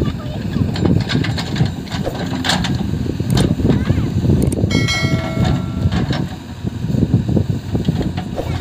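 JCB 3DX backhoe loader's diesel engine running under load as its backhoe bucket drags and scrapes loose soil, with scattered clicks and knocks. A steady high tone, horn-like, sounds for about a second near the middle.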